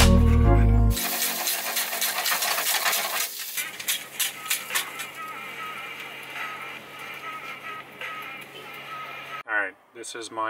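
Background music with a heavy beat, cut off about a second in. Then cooking in a small van galley: utensils and cookware clinking and clattering over a steady hiss, with the clinks thinning out after the first few seconds.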